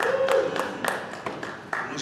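Audience applause dying away into a few scattered claps, with a short voice heard over it near the start.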